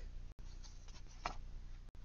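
Faint rustle of stiff printed paper cards being handled and shifted, over a low steady room hum.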